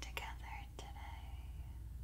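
A woman whispering softly, trailing off a little after the first second.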